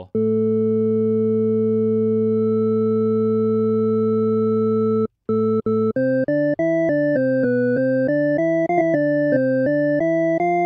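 Bitwig FM-4 synthesizer used as an additive synth: four sine oscillators at 0.5, 1, 2 and 6 times the fundamental, giving a sub-octave, octave and a fifth above. It holds one steady note for about five seconds, then, after a brief break, plays a quick run of short notes stepping up and down.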